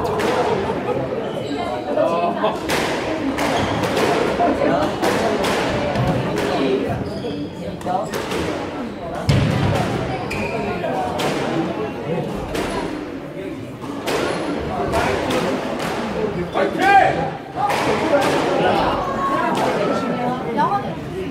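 Squash rally: the rubber ball is struck by rackets and cracks off the court walls and floor in a run of sharp knocks, roughly one every second, each with a short ring in the hall.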